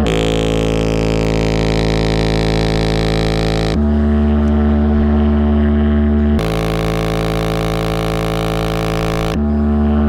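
A JBL Flip 5 portable Bluetooth speaker with its grille removed, playing a bass test track loud. Long held bass notes switch back and forth between two pitches, each note lasting about two to four seconds, while the speaker is running very hot.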